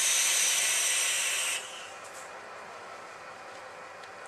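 A vape hit on a dual-18650 mechanical box mod: the sub-ohm coil fires and sizzles as air is drawn through the atomizer, a steady hiss that cuts off suddenly about a second and a half in.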